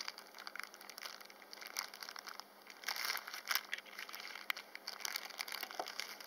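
A clear plastic bag crinkling in irregular crackles as fingers handle the stone specimen sealed inside it, with a few louder crinkles scattered through.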